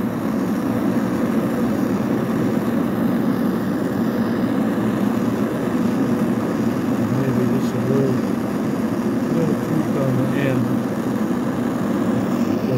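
Handheld gas torch burning with a steady rushing hiss as its blue flame heats a steel knife blade for bending. Faint voices come in now and then.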